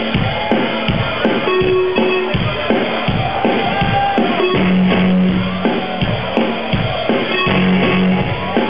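Rock band playing live, with a drum kit keeping a steady beat on bass drum and cymbals under electric guitar and held low notes.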